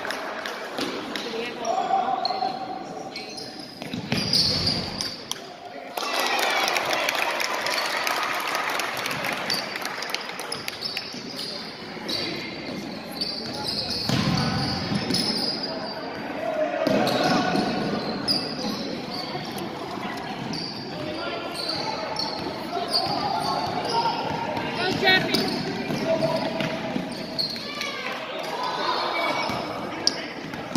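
Basketball bouncing on a hardwood gym floor, with short high squeaks and the shouts and cheers of spectators and players in a large gym.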